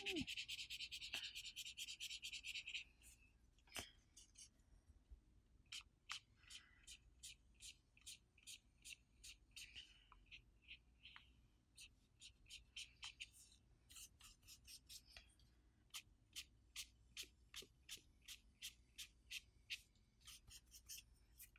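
Brush-tip marker rubbing over paper as colours are blended: a scratchy rubbing for about the first three seconds, then faint short strokes, a couple a second, until near the end.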